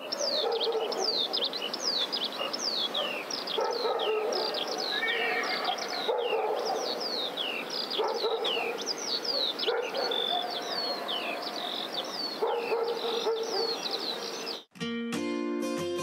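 Birds chirping busily in quick falling notes, with a dog barking now and then. About fifteen seconds in, this cuts off sharply and strummed acoustic guitar music begins.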